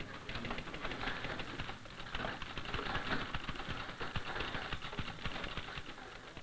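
Typing on a manual typewriter: a fast, uneven run of key strikes that eases off near the end.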